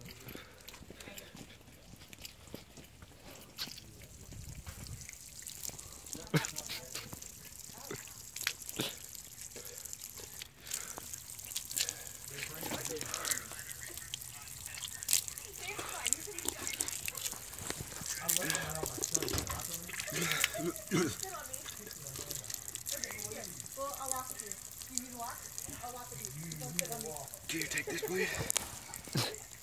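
Thin stream of water running from an outdoor tap, trickling and dripping, with scattered small clicks.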